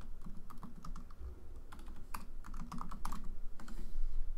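Keystrokes on a computer keyboard: a short command typed in quick, irregular clusters of clicks.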